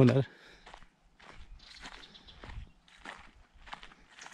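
Footsteps of a person walking along a dry dirt footpath through dry grass and leaf litter, a faint step about every half to two-thirds of a second at a steady walking pace.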